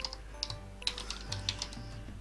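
Computer keyboard typing: a quick run of short keystroke clicks as one word is typed.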